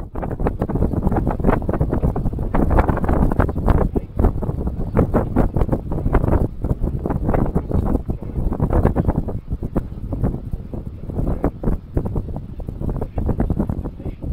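Strong wind buffeting the microphone in irregular gusts, with the rustle of a sail's cloth being handled.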